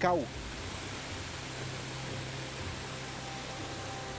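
Rainwater runoff pouring down over a retaining wall, a steady rushing of water.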